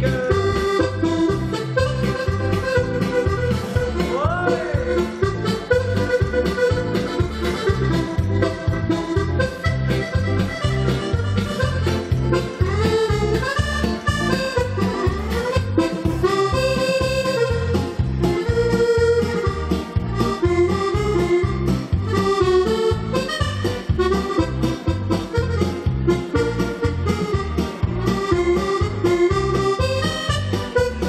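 Button accordion playing a melody over a backing accompaniment with a steady bass beat: an instrumental break in a Spanish-flavoured, flamenco-style dance song.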